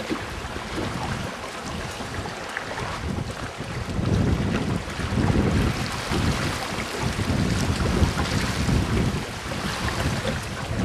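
Water rushing along the hull of a wooden gaff-rigged yawl under sail. Wind buffets the microphone in gusts that grow stronger about four seconds in.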